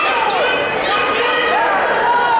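Coaches and spectators shouting during a wrestling bout, their voices echoing in a gymnasium, with a few short knocks from the wrestlers on the mat.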